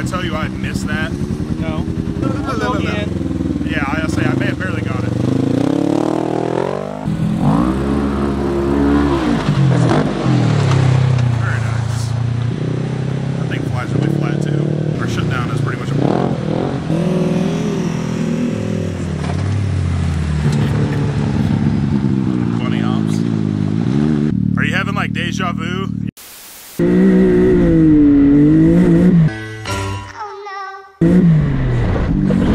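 Polaris RZR RS1 side-by-side's engine revving hard under throttle, its pitch climbing and dropping again and again as the machine is driven. There is a sudden break about 26 seconds in, then a louder stretch.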